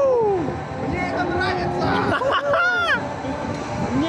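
Riders on a fast-spinning fairground ride yelling and shrieking, several voices gliding up and down in pitch, over a steady rushing noise from the ride's motion.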